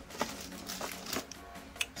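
Background music under a few sharp clicks and knocks as the door of an Xbox Series X replica mini fridge is pulled open.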